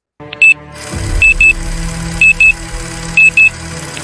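Countdown sound effect: short high beeps, a quick double beep about once a second, in time with the numbers counting down, over a low droning music bed that swells in about a second in.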